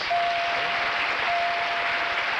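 Wheel of Fortune puzzle board's letter-reveal chime: a steady single tone of about two seconds that rings again a little over a second in, as the called D letters light up. Audience applause runs underneath.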